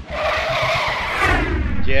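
SUV tyres skidding and screeching on asphalt as the vehicle speeds away, a rough screech that dies off about a second and a half in.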